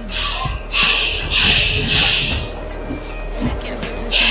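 A large polycarbonate sheet being handled at a guillotine shear: a few hissing rustles, each about a second long, from the plastic sheet sliding and flexing, over a steady low machine hum.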